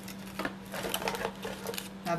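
Light metallic clicks and clinks of costume earrings being handled and put into an ear, a few scattered taps, over a steady low hum.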